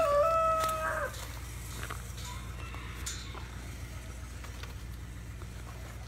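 A rooster crowing, the long held end of the crow ending about a second in. After it only a steady low hum remains, with a few faint clicks.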